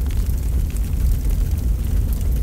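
Large wood fire of a funeral pyre burning: a steady low rumble with scattered crackles and pops.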